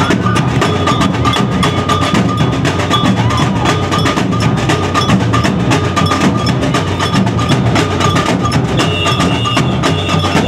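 A samba percussion band playing a loud, fast, dense rhythm on drums, with a steady high ringing tone above the beat.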